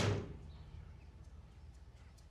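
An interior door being shut: one thud right at the start that dies away quickly, then quiet room tone.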